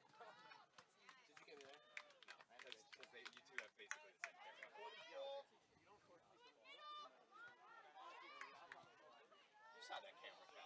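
Faint, distant voices of players calling out on a soccer field during play, with scattered short clicks.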